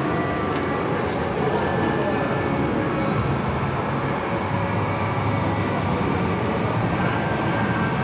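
Steady shopping-mall background noise echoing in a large atrium: a constant rumble with a murmur of distant voices.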